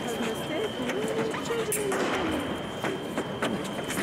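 Fencers' footwork: shoes tapping and stamping on the piste in quick, irregular steps as they advance and retreat. Voices talk over it, and a steady high-pitched tone runs underneath.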